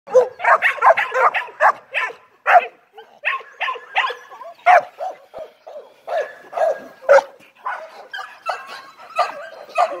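Young dog barking over and over in short, quick barks, about three a second at first and then with brief gaps between them.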